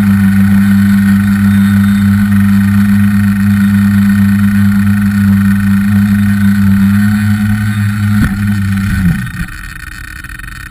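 Tricopter's motors and propellers humming steadily in flight. Shortly after a knock about eight seconds in, the hum slides down in pitch and stops about nine seconds in as the craft comes down onto the snow.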